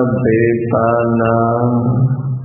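A male voice chanting Pali paritta verses (Buddhist protective chanting) in long-held notes on a nearly level pitch. One phrase ends and a new sustained note begins about half a second in.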